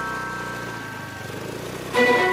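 Motor scooter's small engine running steadily, with a fast low pulse, while a few held chime notes die away over the first part.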